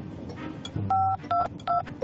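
Telephone keypad tones: three short two-note beeps, about three a second, as a number is dialled, here 911, heard over a faint background hiss.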